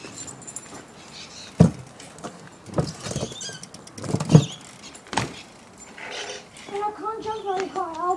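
A bike knocking against a ramp: about five hard knocks spread over four seconds, then a voice talking near the end.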